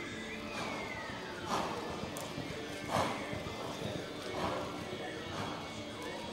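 Background music and voices in a reining arena. A long falling whistle runs through the first second and a half, and several short, sudden sounds come about every second and a half, the loudest about three seconds in.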